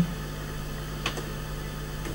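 Steady low electrical hum of room tone, with one faint click about a second in.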